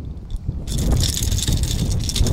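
Baitcasting reel giving a fast ticking whir that starts suddenly just under a second in, over low wind rumble on the microphone.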